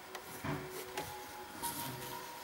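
Pencil and plastic ruler on drawing paper: short scratches and light knocks as a line is ruled and the ruler is shifted across the sheet.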